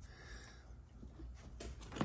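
Quiet room tone with a steady low hum and a few faint clicks near the end, from handling.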